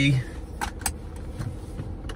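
Car seat belt being pulled across and buckled, with two sharp metal clicks of the buckle a little under a second in, over the car's steady low hum.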